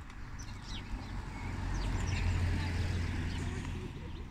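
Outdoor street ambience: a low rumble that swells and fades over a few seconds, with a few faint bird chirps.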